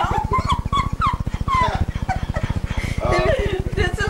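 A small dog whimpering in several short, high whines during the first two seconds, over a steady low buzz.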